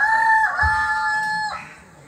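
A rooster crowing: one long, loud, steady-pitched call that ends about a second and a half in.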